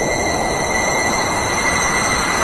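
Small plastic desk fan running close up: a steady whirring rush with a high, unchanging whine over it.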